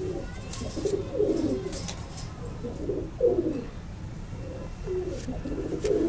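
Domestic pigeons cooing: repeated low coos that fall in pitch, about one a second, with a few faint clicks.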